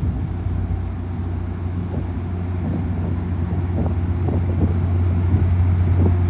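MBTA commuter train pulling out, the steady low drone of its GP40MC diesel locomotive slowly growing louder.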